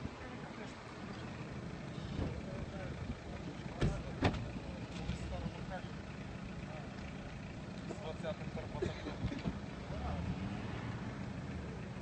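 KrAZ Spartan armoured vehicle's engine running steadily as a low hum, with two sharp knocks about four seconds in.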